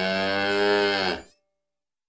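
A cow mooing: one long, low moo that falls slightly in pitch and stops a little over a second in.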